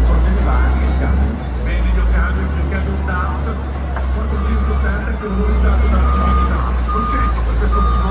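Backup alarm on heavy Caterpillar earthmoving machinery, beeping at one steady pitch about once a second from about halfway through, over the low, steady rumble of the diesel engines.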